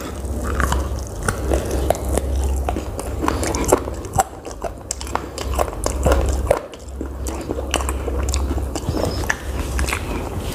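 Close-miked chewing and biting of a mouthful of chicken, with many short wet clicks and smacks of the mouth.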